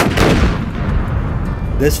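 A cannon shot: one sudden loud boom that rings on and fades over about a second and a half.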